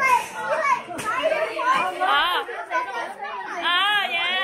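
Children's high-pitched voices and chatter, with a single sharp click about a second in.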